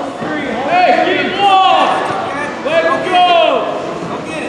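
Voices shouting from the sidelines of a wrestling mat: a series of loud, drawn-out yells that rise and fall in pitch, about four of them.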